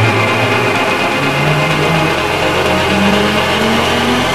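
Electronic music from a techno DJ mix: dense sustained synth sound, with a line of low notes stepping upward in pitch from about a second in.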